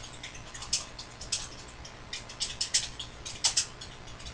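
Trading cards being handled: short scratchy clicks and rustles of card stock in irregular clusters.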